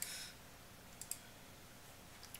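Two faint computer clicks close together about a second in, over quiet room tone.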